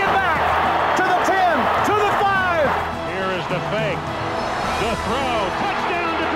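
A football play-by-play announcer calling plays excitedly over stadium crowd noise, with background music underneath. The crowd noise and shouting are loudest for the first few seconds, then ease off.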